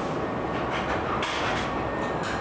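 Steady running noise inside a Hankyu 7300 series railcar, with a couple of short knocks about a second in.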